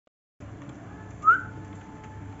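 A single short rising whistle, a little over a second in.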